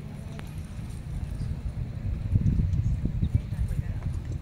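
Irregular hoofbeats thudding in soft arena dirt as a cutting horse darts back and forth working a calf, getting louder in the second half.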